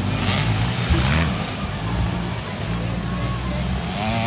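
Dirt bike engines running on the enduro course, their pitch shifting as riders throttle, with faint voices of spectators mixed in.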